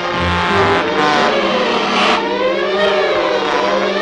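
Orchestral cartoon score, with many instruments playing together. From about halfway in, the upper parts slide and waver in pitch over a held low note.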